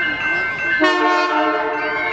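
Diesel locomotive horn on CP GP20C-ECO #2246 sounding one blast of about a second, starting just under a second in. Steady chiming music plays underneath.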